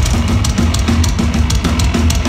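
Metal band playing live and loud, led by a pounding drum kit. Bass drum and snare sound under cymbal strikes about four a second, with guitars.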